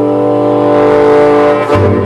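One long, steady chord of several held tones that does not change pitch, ending near the end as the narration comes back in.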